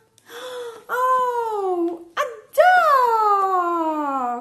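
A woman's voice giving two long, drawn-out wailing calls that slide downward in pitch, the second longer than the first.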